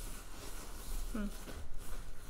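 Hands rummaging through a bag of pens and small items: soft, irregular rustling and clicking, with a brief murmured "hmm" about a second in.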